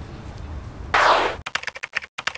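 A whoosh transition sound effect about a second in, followed by a rapid run of sharp typewriter-key clicks, about seven a second. The clicks are a sound effect for title text being typed out. Before the whoosh there is faint outdoor background noise.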